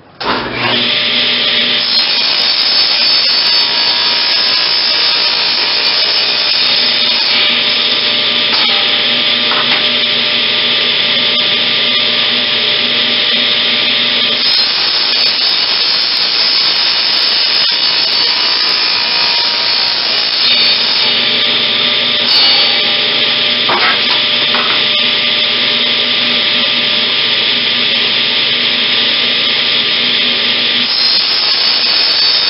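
Table saw starting up just after the start and running steadily while its blade cuts the corners off a square wooden ring blank. The steady tone shifts a few times as the cuts are made.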